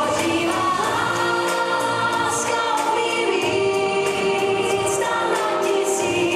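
Pop song with a lead vocal and layered backing voices, the singing in long held notes over a steady accompaniment.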